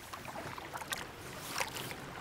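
Kayak paddle strokes: the double-bladed paddle's blades dipping into and splashing through calm water, with short splashes standing out about a second in and again near the end.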